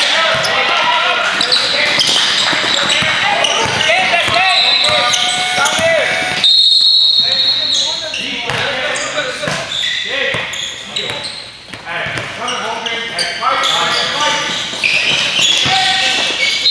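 Indoor basketball game: players and spectators calling out, and a basketball bouncing on the hardwood court. About six and a half seconds in, a sharp high steady tone sounds for over a second, typical of a referee's whistle.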